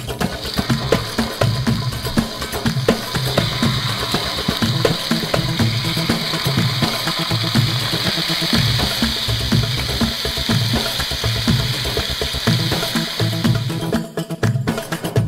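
Meat skewers sizzling in hot oil on a round steel disc griddle. The sizzle starts just after the first skewer is laid down and grows louder about three seconds in as more go on. Background music with a steady beat plays underneath.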